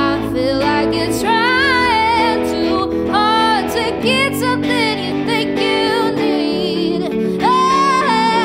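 Female vocalist singing long held notes that waver in pitch, with no clear words, over electric guitar and a band playing a soul-pop song.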